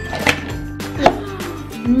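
Toy pineapple rings tipped out of a cardboard toy canister, knocking onto a tabletop in a couple of sharp knocks, the loudest about a second in, over background music.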